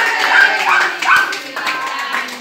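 A group of people singing a birthday song together, with many hands clapping along.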